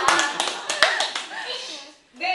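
A small group of women laughing and talking over one another, with a few sharp hand claps in the first second.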